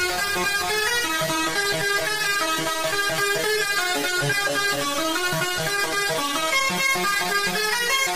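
Makina dance track in a breakdown: a synth riff of quick, stepping notes plays with the kick drum and bass dropped out.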